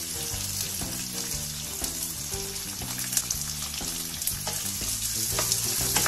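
Chopped onions sizzling in hot oil in a kadhai, a steady frying hiss, with a few clicks and scrapes as a wooden spatula stirs them near the end.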